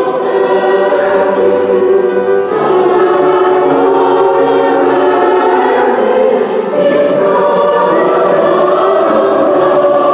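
A mixed choir of women's and men's voices singing sacred classical music in long, held chords that change every second or so, with sharp 's' consonants sounding together a few times. It is heard in a stone church.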